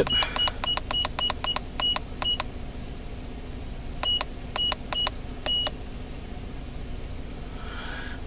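Autel MD808 scan tool's keypad beeping as its buttons are pressed to step through menus: about ten short high beeps in quick succession, a pause, then four more spaced out.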